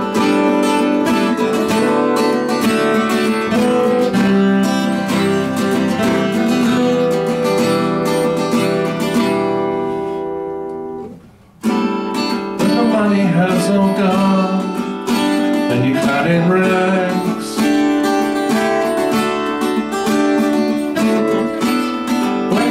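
Two guitars strumming chords in a song's instrumental intro. About ten seconds in, the chords ring out and fade to a brief stop, then the strumming picks up again.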